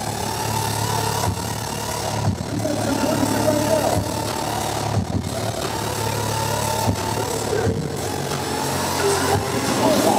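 Electronic dance music from a DJ set played loud over a large venue sound system, with a steady heavy bass line and crowd voices over it.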